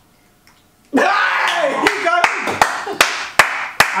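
A second of near quiet, then a group of people break into loud laughter and shouting. Six sharp hand slaps ring out through the laughter, about two a second.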